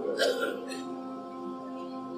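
Ambient background music: a soft, steady drone of several held tones. A short breathy sound from the speaker comes just after the start.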